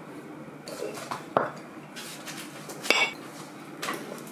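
A spoon scraping and clinking against a ceramic plate as fried rice is scooped up: a few short sharp clinks, the loudest about three seconds in with a brief ring.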